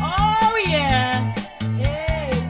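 A live band plays a steady drum beat with bass and guitar, while a high voice sings a long note that slides up and then falls away.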